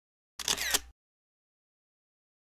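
Single-lens reflex camera shutter firing once: a quick clack lasting about half a second, a little under half a second in.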